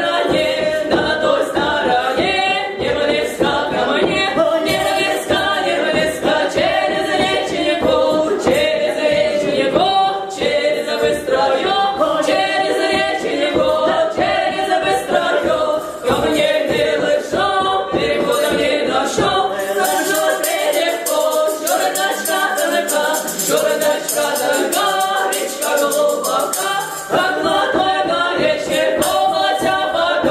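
Three women's voices singing a Cossack wedding dance song a cappella in part harmony, in a folk style. About two-thirds of the way in, a fast rhythmic clatter joins the singing for several seconds.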